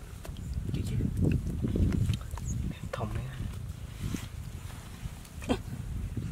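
Wet clay mud being dug and pushed by hand and with a metal pole: irregular low thuds and scrapes.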